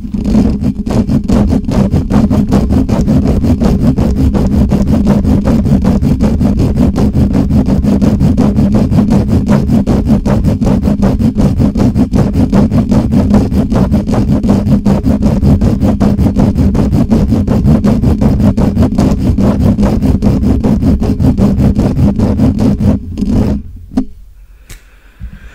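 Fingers scratching, rubbing and gripping a microphone directly, fast and without a break: a loud, dense, rumbling friction noise heavy in the low end. It cuts off abruptly about a second before the end.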